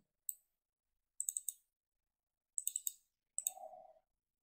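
Computer mouse clicking while zooming in on a map image: a single click, then two quick runs of three or four clicks, and one more click near the end, followed by a faint brief hum.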